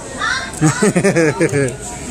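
A person laughing: a quick run of high, rising and falling "ha" sounds, about six a second.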